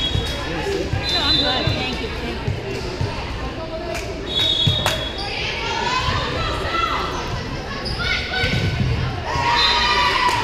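A volleyball thudding on a hardwood gym floor several times as the server bounces it, with short, high whistle blasts from the referee, then the serve and rally as voices call out across a large, echoing gymnasium.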